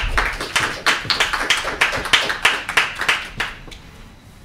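Audience applauding: a round of hand clapping that starts suddenly and dies away about three and a half seconds in.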